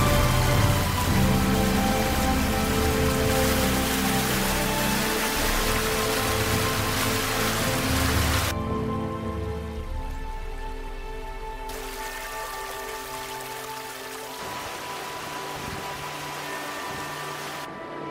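Water rushing over rocks in a creek, a steady hiss, under background music with long held notes. The water noise drops out for about three seconds midway, then comes back.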